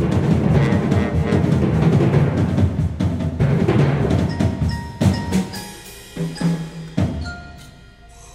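Live symphony orchestra playing a loud, driving, drum-heavy action cue. The dense rhythm breaks off about five seconds in into three sharp accented hits, then fades out near the end.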